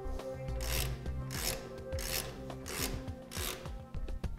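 Rhythmic rasping strokes, five in all and about one every 0.7 s, as the trailer brake assembly's mounting nuts are worked off the studs behind the rusty axle flange.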